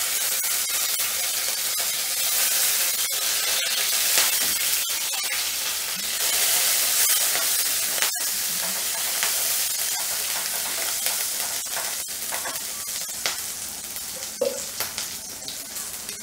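Chopped green chillies sizzling in hot oil with cumin seeds in a non-stick kadhai, stirred with a silicone spatula. A steady frying hiss with a few light ticks, easing a little over the last few seconds.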